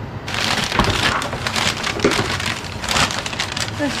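White packing paper crinkling and rustling as hands dig through it inside a plastic tote. A dense crackle of small clicks starts about a third of a second in.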